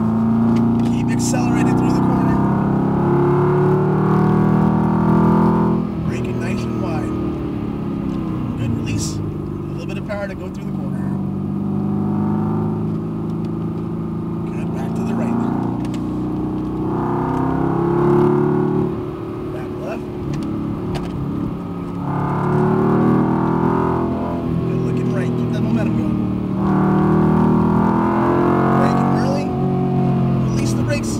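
Mercedes-AMG GT R's twin-turbo V8 heard from inside the cabin on track, its revs rising under throttle and falling off several times as the car accelerates out of corners and lifts for the next, loudest about eighteen seconds in.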